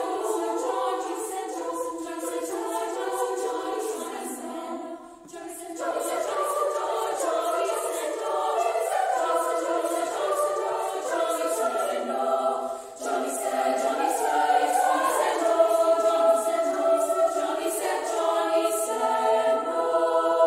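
A women's choir singing in three upper-voice parts (SSA). The sound breaks off briefly twice, about five seconds in and again just before thirteen seconds.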